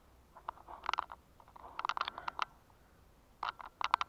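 Handling noise from a hand-held camera as it swings round: three short clusters of light clicks and rattles, about half a second in, around two seconds in, and near the end.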